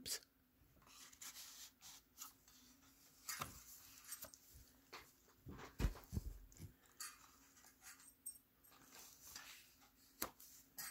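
Faint paper and card handling: soft rustles and light taps as the pages of a handmade journal are held and turned. A few stronger knocks with dull thuds come around the middle.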